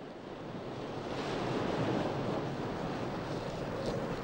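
Sea surf washing on a beach, mixed with wind: a steady rushing that swells about a second in.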